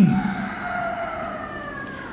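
A drawn-out wailing tone with overtones, gliding slowly downward for about a second and a half, then fading.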